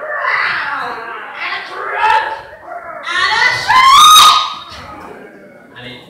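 Adult voices shrieking and yelling as the stage monster's 'horrible shriek', with a loud, high, rising shriek about three seconds in, then fading.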